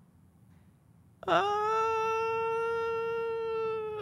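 A man's long, drawn-out, high-pitched 'uhhh' of hesitation, held at one steady pitch for nearly three seconds, starting about a second in after near silence.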